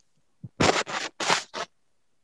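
Four short scratching or rubbing noises in quick succession, about a second long in all.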